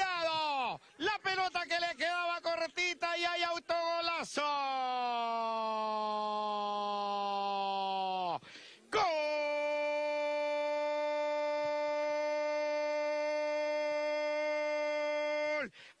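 Football commentator's voice: a rapid excited call, then two long held shouts of several seconds each, the second higher and steadier, in the drawn-out style of a Latin American goal call.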